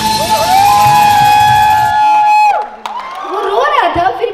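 Bihu folk dance music ending, with a long held high note that bends and then drops away about two and a half seconds in, followed by voices and some cheering.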